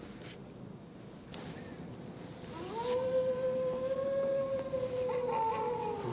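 Howler Timer app's alarm sounding at the end of a countdown: a recorded howl, one long call that starts about two and a half seconds in, glides up, then holds steady.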